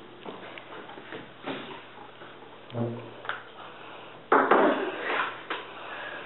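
Scuffling of a staged fight on a parquet floor: scattered knocks and bumps, then a loud, rough burst of noise lasting about a second, a little after four seconds in.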